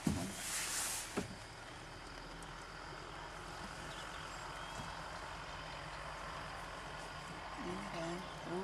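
A short burst of rustling noise in the first second, then a faint steady low hum and hiss, as from an idling vehicle engine.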